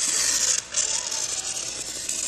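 Marker tip scraping across a styrofoam sheet as it traces around a round template: a steady, scratchy squeak with a brief break about two-thirds of a second in.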